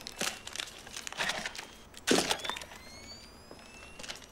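A few short bursts of crinkling, rustling noise, each about a second apart, with faint high rising tones later.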